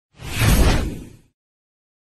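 A single whoosh sound effect for an animated logo transition: one swell with a deep low end that builds for about half a second and fades away just after a second in.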